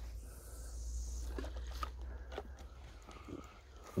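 Faint handling and movement noise: soft rustling at first, then a few short clicks and knocks, over a low steady rumble.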